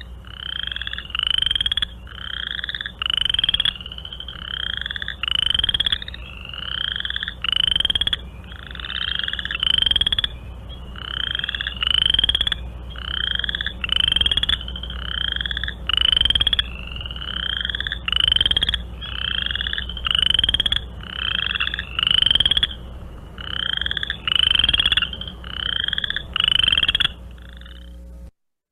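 Several chorus frogs calling, each call a short rising trill like a finger drawn along the teeth of a comb. The calls come one after another, often overlapping, with a steady low hum beneath.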